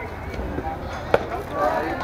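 One sharp smack of a pitched fastpitch softball about a second in, followed by players and spectators calling out.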